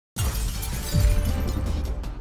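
Breaking-news intro sting: glass shattering with a deep low hit over music, starting suddenly and swelling again about a second in.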